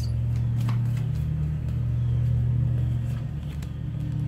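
A steady low mechanical hum, with a few faint soft clicks from tarot cards being handled.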